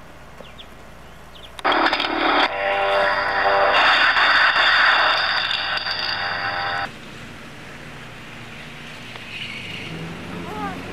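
A loud electronic buzzing tone, steady and rich in overtones, that starts abruptly about a second and a half in and cuts off suddenly about five seconds later, over a low background hum.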